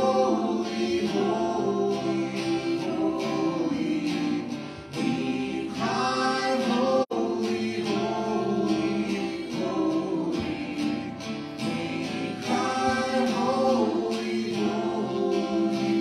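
Worship song sung by several voices with acoustic guitar accompaniment. The sound drops out for an instant about seven seconds in.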